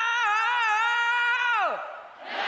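A high-pitched female anime voice holding one long, slightly wavering cry, its pitch dropping off near the end.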